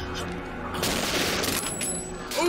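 Gunfire on a TV drama's soundtrack: a revolver firing about a second in, a burst of noise lasting under a second.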